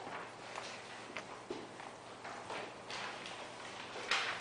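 Pages of a book being turned and handled: a string of short paper rustles and light taps.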